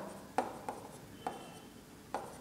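Chalk writing on a blackboard: three short taps as the chalk strikes the board, with faint scraping between them.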